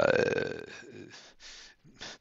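A man's long, drawn-out hesitation "uh", falling in pitch and trailing off within the first second, followed by faint sounds.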